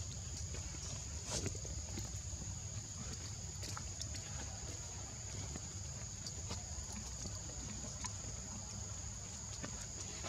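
Steady high-pitched insect drone, with scattered faint clicks and taps over a low rumble.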